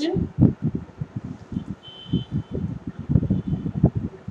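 A stylus knocking and rubbing against a drawing tablet while a word is handwritten: a rapid, irregular run of dull low knocks that the microphone picks up through the desk.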